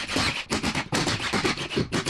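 Cordless impact wrench hammering in a quick run of short bursts, backing out the 13 mm bolts that hold the transmission mount.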